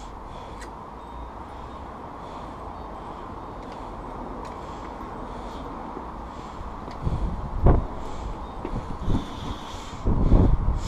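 Wind rumbling on the microphone outdoors: a steady low rumble that turns gusty about seven seconds in, with the strongest gust near the eighth second.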